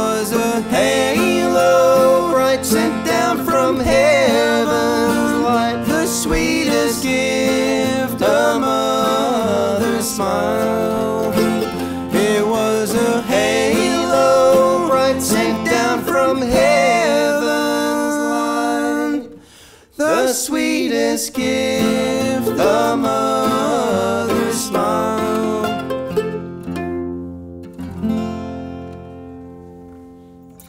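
Bluegrass duo of acoustic guitar and mandolin playing a song. A little past halfway the music stops abruptly for a moment, then comes back in, and over the last few seconds it dies away into a final chord left to ring out.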